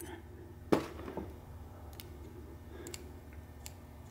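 Small metallic clicks of a screwdriver tip against the needle bearings and bore of a Muncie four-speed countergear: one sharper click about three quarters of a second in, then a few lighter ticks.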